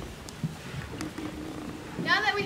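Low, steady background rumble of a hall and stage, with a couple of faint small clicks as performers move about.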